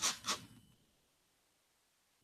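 The end of a spoken word, then near silence: faint room tone.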